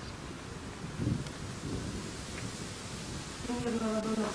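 Wind buffeting a handheld camera's microphone outdoors: an uneven low rumbling noise. A voice starts near the end.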